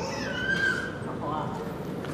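Faint, distant voices of class members calling out an answer, one high voice rising and falling in pitch, heard over the murmur of a reverberant hall.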